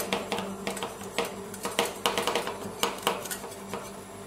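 Two metal spatula scrapers chopping pomegranate seeds on a stainless-steel ice-roll cold plate: rapid, irregular metallic clacks as the blades strike the plate, over a steady low hum.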